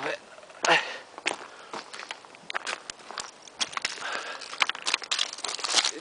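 Footsteps descending loose scree of flat broken rock: boots crunching and shifting stones, with irregular clicks and clatters as the loose rocks knock together.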